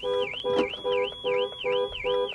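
Car alarm sounding: a warbling siren tone sweeping up and down about four times a second, over a lower beep pulsing about three times a second.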